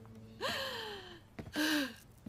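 A woman crying: a long cry falling in pitch, then a loud gasping sob near the end.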